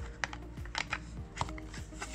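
A handful of light, irregular clicks and taps: small glass gel polish bottles with plastic caps being handled and set into a plastic box tray, long nails tapping against them. Faint background music runs underneath.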